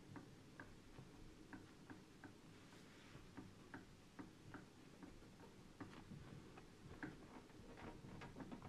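Faint, irregular short squeaks and ticks, a few per second, of a cloth wiping marker off a glass lightboard.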